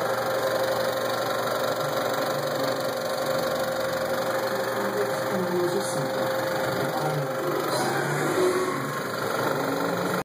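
35mm film projector running with film threaded through it: a steady mechanical running noise with a constant hum.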